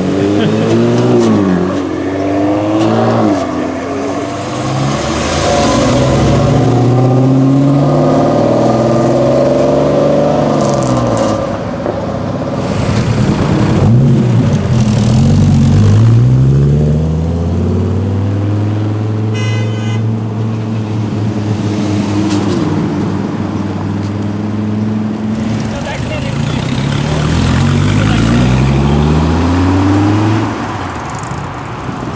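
Performance cars accelerating away one after another, their engine notes climbing and dropping through gear changes, among them a Dodge Viper's V10 in the middle.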